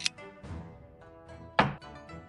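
Two sharp clacks of a xiangqi piece being set down on the board, one right at the start and a louder one about a second and a half in, over soft background music.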